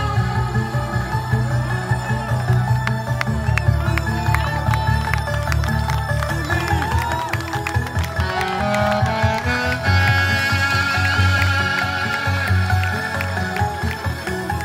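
Live saxophone playing a bending melody over a loud electronic dance backing track with a strong pulsing bass line; the music grows fuller and brighter about ten seconds in.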